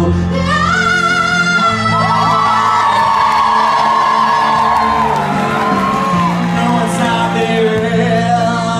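Live pop performance in a large hall: a backing track plays over the PA while a singer holds a long note that glides up about half a second in, with audience members whooping in the middle.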